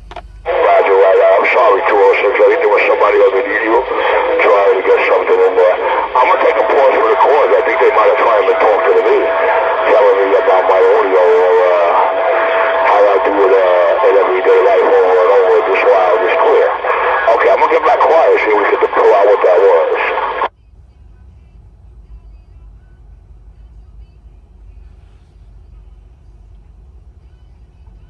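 A voice coming in over a Magnum S-9 radio's speaker, thin and band-limited as radio audio is, while another station transmits. About 20 seconds in, the transmission cuts off suddenly, leaving only a faint low hiss.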